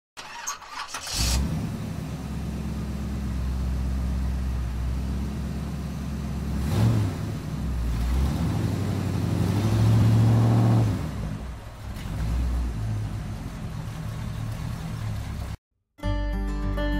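Car combustion engine starting about a second in and then idling, blipped once and revved for a couple of seconds before settling back to idle; the sound cuts off suddenly near the end.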